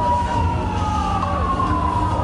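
A siren-like wailing tone that slides slowly down in pitch, over loud, continuous low bass.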